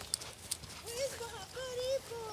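A high voice making short, wordless gliding calls, three or four in a row in the second half, with a couple of sharp clicks in the first half-second.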